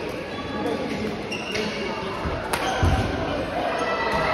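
Badminton play in a large, echoing sports hall: sharp racket strikes on a shuttlecock, the loudest about two and a half seconds in, with footfalls on the court floor and voices in the background.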